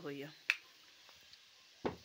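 A wall-mounted rocker switch for the clothes iron's socket flicked off with one sharp click about half a second in. A duller knock follows near the end.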